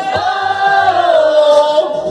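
A group of voices singing along together on one long held note that sags in pitch near the end, over a karaoke backing track with a low bass pulse.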